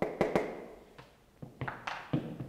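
A few light taps and knocks, irregularly spaced, with a short room echo.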